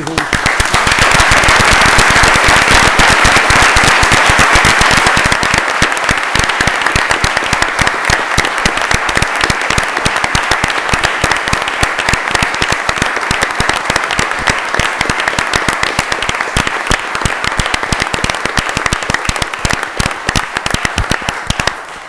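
Audience applauding: a long round of hand clapping, loudest in the first few seconds and slowly tapering off.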